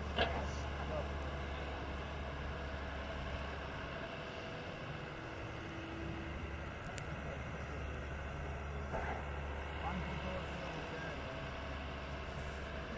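Steady low rumble of an excavator's diesel engine running, with faint distant voices and a few light clicks.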